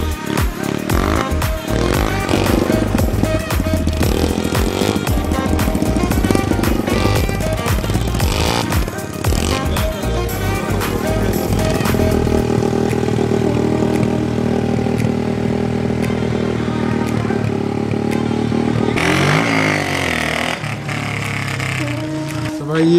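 Background music with a dirt bike's engine revving under it. In the second half the engine is held at high revs for several seconds as a steady drone, then its pitch swings up and down near the end.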